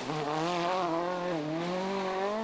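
Volkswagen Polo R WRC rally car driving hard on a tarmac stage, its turbocharged four-cylinder engine held at high revs: the pitch climbs, dips briefly partway through, then climbs again.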